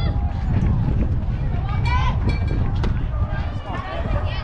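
Voices of players and spectators calling out at an outdoor youth baseball game, over a heavy low rumble, with a couple of sharp clicks in the middle.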